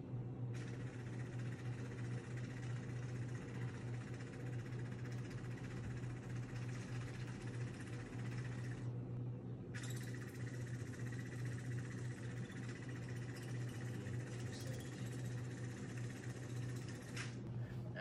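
Small electric motors of a homemade robot vacuum car running: a steady hum with a whir over it. The whir breaks off briefly about nine seconds in and again near the end.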